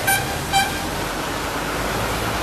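Car horn, two short toots about half a second apart, over steady traffic noise.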